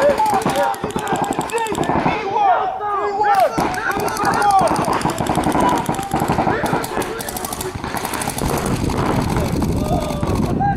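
Paintball markers firing in rapid strings of shots, with voices shouting across the field over the firing.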